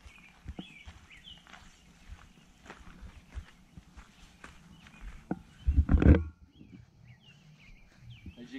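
Footsteps of a man in flip-flops walking over grass and then gravel, with a louder cluster of knocks and scuffs about six seconds in. Short bird chirps come near the start and again near the end.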